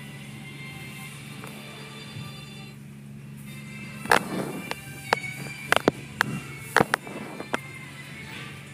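Automatic car wash heard from inside the car: a steady low machinery hum. About halfway through comes an irregular run of sharp slaps as the hanging cloth strips hit the car.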